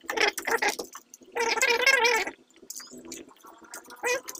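Gloved hands working wires with pliers at a plastic junction box: scattered clicks and rustles. About a second and a half in, a voiced sound lasting about a second, wavering in pitch, is the loudest thing.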